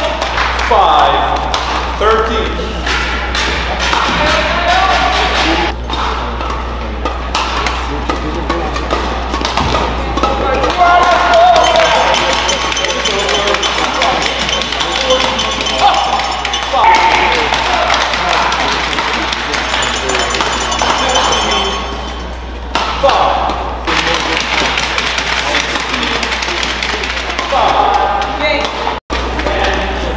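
Badminton rallies: sharp racket strikes on the shuttlecock and quick shoe impacts on the court, over crowd voices and shouts in an indoor arena, with a steady low hum.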